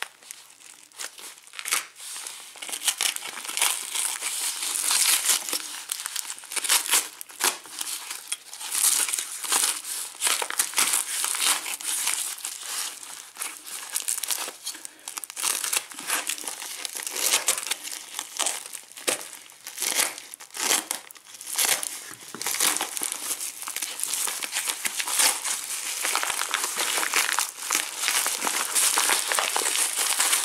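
Paper mailing envelope being torn open by hand and its taped wrapping crinkled and pulled off the item inside: a continuous crackling rustle with many sharp tears.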